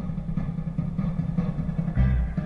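Car engine and road noise heard from inside the cabin while the car drives slowly.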